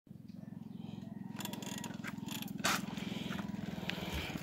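Bicycle rolling along a paved street, picked up through a camera phone mounted on the bike: a fast, even rattle that grows slowly louder, with scattered clicks and one sharper knock a little past halfway.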